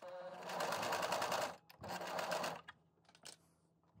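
Domestic electric sewing machine stitching through fabric in two short runs, the first about a second and a half long, the second under a second, each with a fast even needle rhythm.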